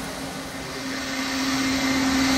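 Electric mixer-grinder running steadily as it grinds the ingredients for momo jhol, a constant motor hum that grows louder after the first half second.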